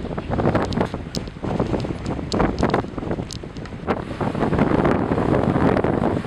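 Strong storm wind gusting and buffeting the microphone, with rough harbour water churning beneath it.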